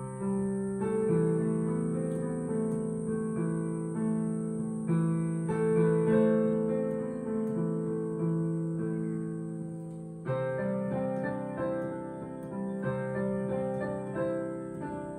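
Digital piano played slowly in an improvised piece on four chords in C major, with sustained chords and a melody over them; a fresh chord is struck about every four seconds.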